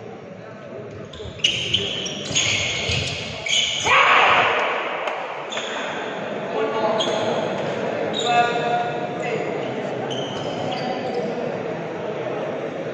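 Badminton doubles rally: sharp racket strikes on the shuttlecock and short high squeaks of shoes on the court floor, with voices calling out, loudest about four seconds in, echoing in a large hall.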